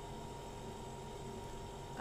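Quiet room tone: a low, steady hum and hiss with no distinct event.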